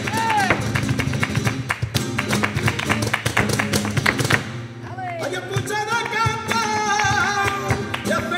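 Flamenco soleá with a solo voice and guitar. The sung line ends about half a second in and gives way to a stretch of rapid percussive strokes. The voice comes back about five seconds in over the guitar.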